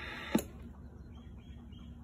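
Radio receiver hiss cuts off with a single sharp click about a third of a second in, as the Galaxy 2547's microphone is keyed to transmit an unmodulated dead carrier; low, quiet room tone follows.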